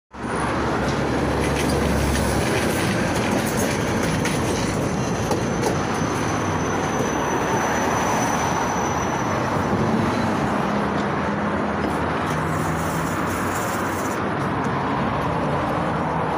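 KTM-28 (71-628-01) low-floor tram running in along the rails and drawing up at a stop: a steady, continuous rumble of wheels and running gear, with a faint thin high whine in the first half.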